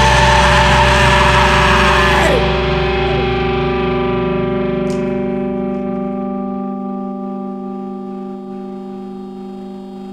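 Post-hardcore band music: a dense, loud distorted passage breaks off about two seconds in, leaving a sustained distorted electric guitar chord ringing and slowly fading. A low bass note drops out about two-thirds of the way through while the chord rings on.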